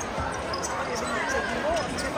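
Futsal ball play on an indoor court floor, with ball touches and court noise under the steady talk and calls of players and spectators in the hall.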